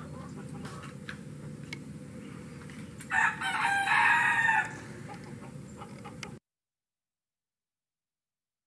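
A rooster crows once, a loud call of about a second and a half starting about three seconds in, over a faint steady background. The sound cuts off abruptly to silence a little after six seconds.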